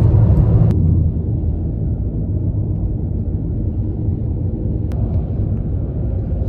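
Steady low rumble of road and engine noise inside a moving car's cabin, with a single brief click about five seconds in.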